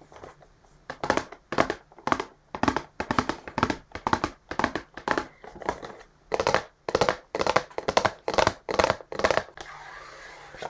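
Long fingernails scratching and tapping on a cardboard box held close to the microphone, in short, crisp strokes. The strokes come about three a second, starting about a second in.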